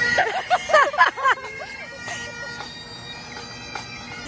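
Bagpipes playing: steady drones under the chanter's held notes, which change about two and a half seconds in. A woman laughs over them for the first second or so.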